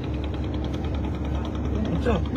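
An engine running steadily: a low hum with a fast, even pulsing over it.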